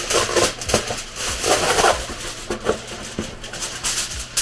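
Aluminium foil being pulled from its box and crinkled by hand: an uneven run of crisp rustles, busiest about a second and a half in.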